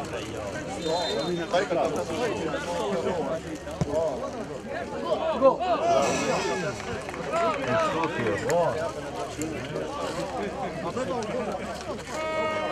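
Many voices shouting and calling over one another in the open air: footballers and onlookers during an amateur football match as play surges toward goal.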